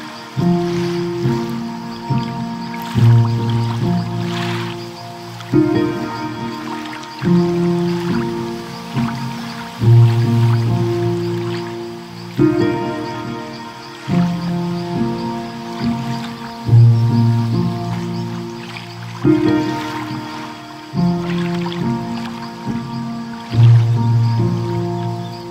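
Slow, calm solo piano music: single notes and low chords fade after each strike in a phrase that repeats about every six to seven seconds. Under it runs a faint crackle and wash of noise from the fireplace and ocean-wave sounds mixed into the track.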